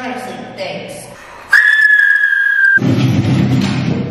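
A sudden, loud, steady high whistle-like tone lasting just over a second, falling slightly in pitch, then cut off by a loud low rushing rumble.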